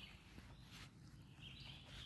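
Near silence outdoors, with two faint, high songbird calls: a short one at the start and a longer one about a second and a half in.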